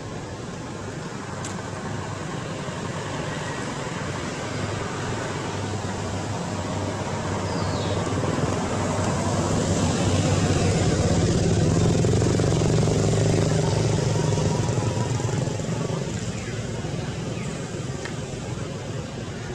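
A motor vehicle's engine passing by, growing louder to a peak about ten to fourteen seconds in and then fading away.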